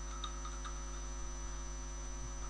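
Steady low electrical mains hum in the recording, with a thin steady high whine over it. A few faint keyboard clicks come in the first second.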